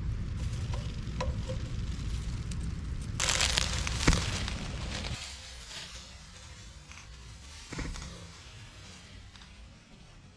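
Dry leaves and pine straw rustling and crackling close to the microphone over a low rumble of handling noise. About three seconds in comes a louder crackling burst lasting about a second, ending in a sharp knock; after that it goes quieter.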